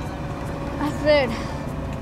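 Bus engine and road rumble heard from inside the moving bus's cabin, with a voice briefly about a second in.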